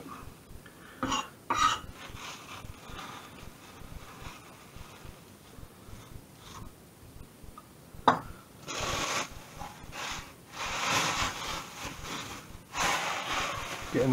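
Chef's knife working parsley on a wooden chopping board. A couple of sharp knife strikes come near the start, a single knock about eight seconds in, then several long swishes as the blade scrapes the chopped parsley across the board.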